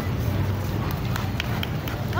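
Wind rumbling steadily on a handheld phone's microphone, with a few footstep-like clicks near the end and faint voices of a crowd in the distance.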